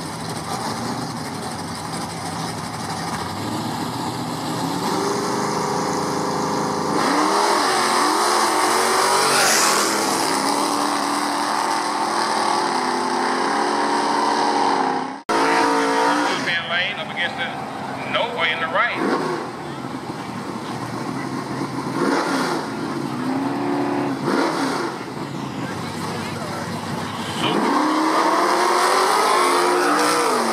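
Drag-racing muscle car engines at the starting line: they idle, then rev up and down. Later comes a burnout with tyre noise, and near the end an engine revs hard as a car accelerates.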